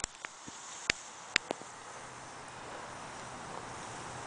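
Faint, steady outdoor background hiss, with a few sharp clicks in the first second and a half.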